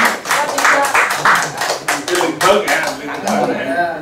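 A small group clapping by hand in quick, uneven claps, with voices in the room; the clapping thins out about three seconds in.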